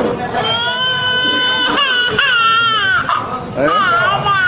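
A man's high-pitched wailing voice: one long held note, then cries that bend up and down in pitch.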